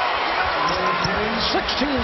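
Basketball arena crowd noise with voices calling out as a three-pointer goes in during a televised NBA game, with a thump about a second in.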